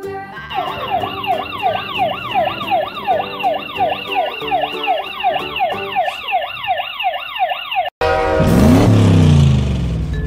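Fire-engine siren sound effect: a fast repeating wail, about two to three sweeps a second, over background music. It cuts off near the end and is replaced by a louder whoosh with a falling tone.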